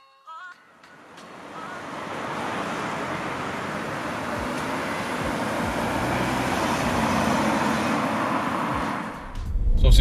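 MG ZS car driving past on the road, heard mostly as tyre noise that builds over several seconds and fades away near the end.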